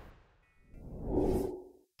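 Whoosh sound effect for a video's intro title: a swell of rushing noise that builds from about half a second in and cuts off suddenly just before the end, with a few faint high tones at its start.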